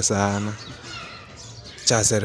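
A man's low-pitched voice holding a drawn-out syllable. It breaks off about half a second in, leaving a pause with only faint background noise, and speech starts again just before the end.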